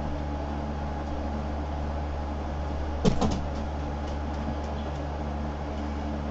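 Steady low hum of room noise, with a brief clack about halfway through.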